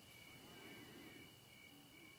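Near silence with faint, steady high-pitched chirring of crickets, pulsing slightly.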